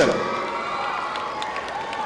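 Audience applauding and cheering as a graduate's name is announced, a steady spread of clapping.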